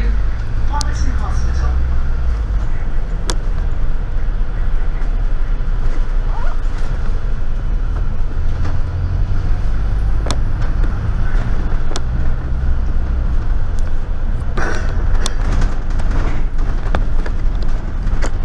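Inside the upper deck of a moving London double-decker bus: the engine and road noise make a steady low rumble, with a few sharp clicks and knocks from the bodywork.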